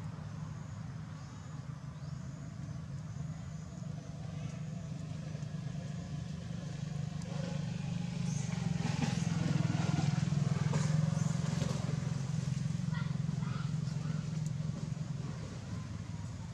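A motor vehicle engine running with a steady low hum, swelling louder about halfway through and easing off again toward the end.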